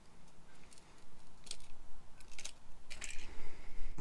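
Utility knife blade cutting through a chainsaw fuel-tank vent line: a few short, crisp clicks and crunches, getting a little louder toward the end.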